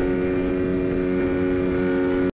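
Outboard motor of an inflatable dinghy running at a steady speed, a constant hum, with water rushing and splashing past the hull.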